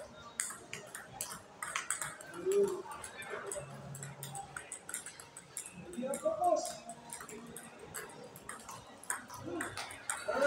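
Table tennis rally: a celluloid-type ball clicking off rubber paddles and bouncing on the table, in quick irregular hits about two a second. A few short vocal sounds rise and fall between the hits, the loudest moments in the stretch.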